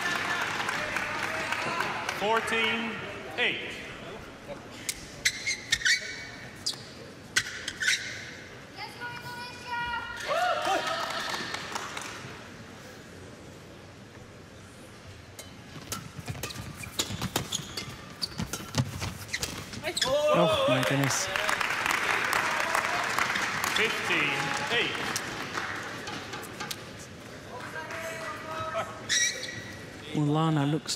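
Badminton rally on an indoor court: sharp racket strikes on the shuttlecock and players' shoes squeaking on the court surface. The crowd cheers after a point, about two-thirds of the way through.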